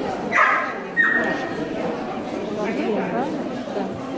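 A dog yelps twice in quick succession, short and high-pitched, the second call a held note, over the chatter of people in a large hall.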